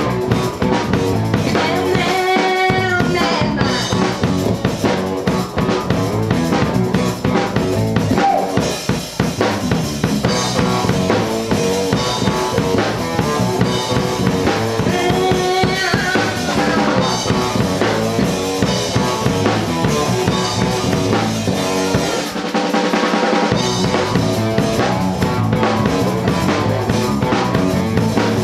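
Live band playing a pop-rock song: a drum kit with snare and bass drum, electric bass, and a woman's voice singing at times. The bass and kick drop out briefly about three-quarters of the way through, then come back.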